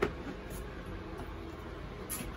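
A single short knock as the plastic air box is handled into place, then only faint handling noises over a steady low hum.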